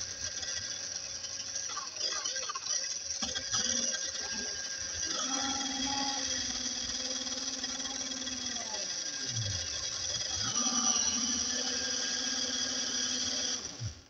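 Small electric motor of a motorized LEGO car whining steadily as it spins the wheels at speed. Its pitch dips and picks back up about nine seconds in, and it cuts off suddenly at the end.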